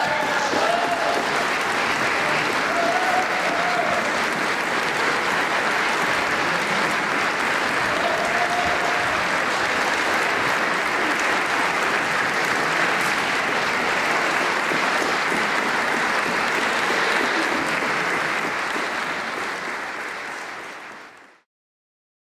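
Concert audience applauding steadily, fading away near the end.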